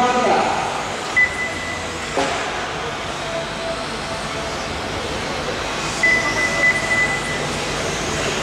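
Steady hall noise of an indoor 1/12-scale electric RC car race, with two high, steady beeps of about a second each and a single sharp click a couple of seconds in.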